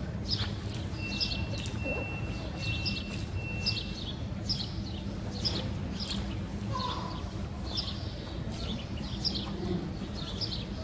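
Small birds chirping over and over, short high notes about twice a second, over a steady low background rumble.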